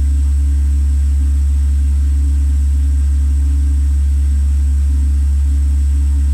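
A loud, steady low hum that does not change, with a few fainter steady tones above it.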